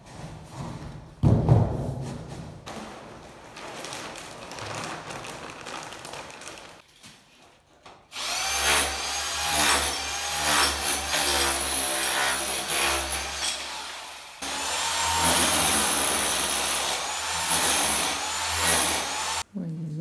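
Corded power tool running against a tiled wall, chipping ceramic tiles off, in two loud spells from about 8 seconds in, with a short break between them, and stopping abruptly near the end. Before that there is a thump about a second in and a quieter stretch of rustling noise.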